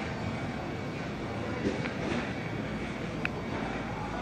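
Steady ambient noise of a large store showroom, an even rumbling hum with a few faint clicks and a brief high ping a little over three seconds in.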